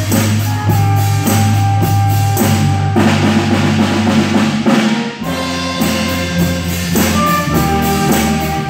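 A small jazz band playing live, with a drum kit keeping a steady beat on cymbals, a strong bass line and held horn notes over it. The band moves to a new chord just after five seconds in.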